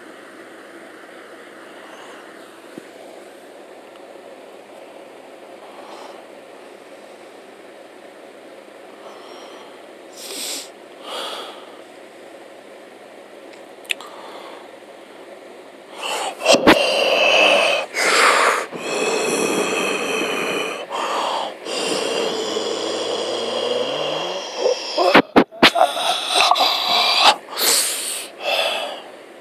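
Faint steady microphone hiss. About halfway through, loud breathy mouth noises from a person close to a phone microphone start, coming in bursts that stop and start.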